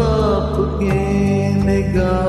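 A man singing a Hindi film song over a karaoke backing track, holding one wavering note through the first second while the instrumental accompaniment carries on.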